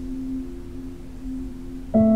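Soft background music: a low sustained tone, two steady notes held without a break. Right at the end a new, louder resonant note is struck and rings on.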